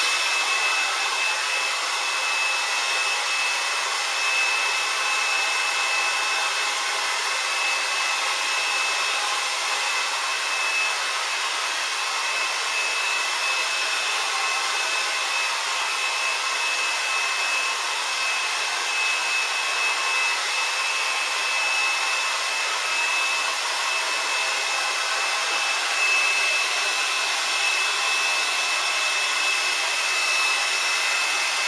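Handheld hair dryer blowing steadily, a constant rush of air with a thin high whine running through it.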